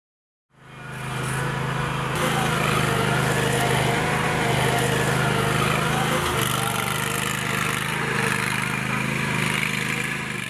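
Small petrol lawn mower engine running steadily, fading in during the first second.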